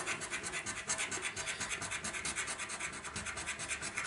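Scratching the coating off the panels of a Christmas advent scratchcard: a steady run of quick, even scratching strokes.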